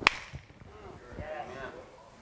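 A single sharp hand clap with a short room echo, followed by a faint voice.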